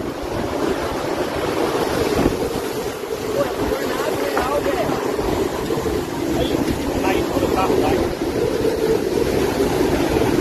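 Tornado winds and heavy rain rushing steadily, buffeting the microphone, with faint voices now and then.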